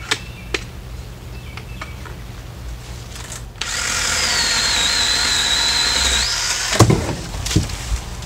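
Black & Decker 18V cordless pole saw, running on a converted 20 V lithium-ion pack, starts about three and a half seconds in and runs steadily for under three seconds with a high whine that dips a little in pitch, then stops. A sharp crack and a couple of knocks follow near the end.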